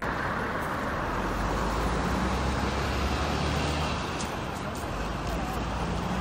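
Road traffic on a busy city street: a steady low rumble of car and bus engines and tyres under an even hiss.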